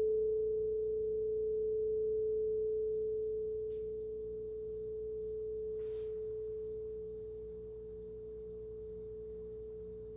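Quartz crystal singing bowl ringing with one pure, steady tone that slowly fades, wavering gently in loudness. A faint short noise sounds about six seconds in.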